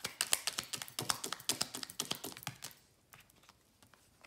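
A deck of tarot cards being handled in the hands, making a rapid, irregular run of light clicks for about two and a half seconds, then a few faint ticks.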